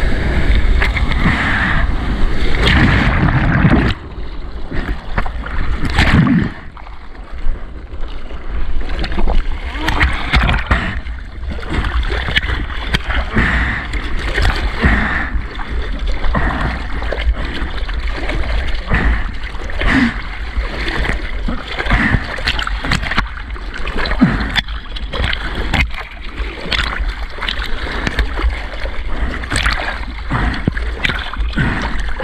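Water rushing and splashing around a surfboard as it rides whitewater, loudest for the first four seconds with another surge about six seconds in. After that come irregular slaps and splashes of arms paddling in the water, roughly one every second or two, over a steady low rumble of moving water.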